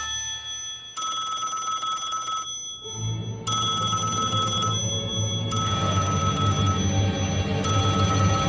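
Wall-mounted telephone ringing, a cartoon ring sound effect: repeated rings of about a second and a half each with short pauses between them. Background music comes in under the ringing about three seconds in.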